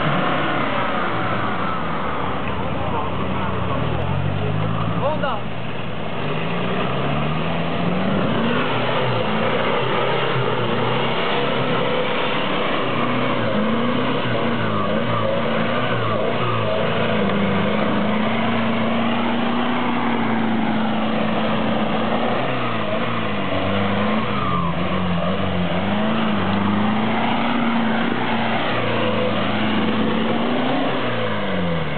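Off-road Jeep's engine revving up and down under load as it climbs a muddy slope, the pitch rising and falling repeatedly and holding steadier for a few seconds past the middle.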